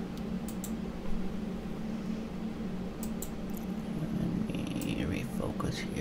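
A steady low hum throughout, with a few faint clicks scattered through it.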